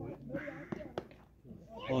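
Two sharp knocks about a second in, a cricket bat striking the ball, over faint men's voices. A man calls out "oh" right at the end.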